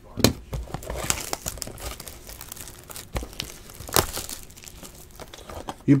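Plastic shrink-wrap crinkling and tearing as a trading-card blaster box is unwrapped and opened, in irregular crackles with a few sharper snaps.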